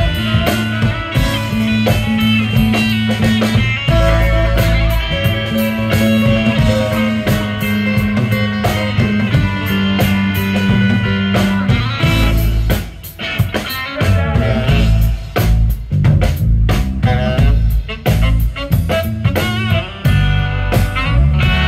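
Live rock band playing an instrumental passage with no vocals: electric guitars over bass and drum kit, with a brief drop in loudness about two-thirds of the way through.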